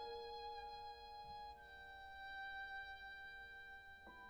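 Violin and piano playing a slow, soft passage of contemporary classical chamber music: the violin holds long notes, moving to a new note about one and a half seconds in, over sustained piano.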